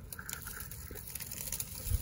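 Faint scraping and a few small clicks as a flat rock is lifted and tipped up off dry, stony ground.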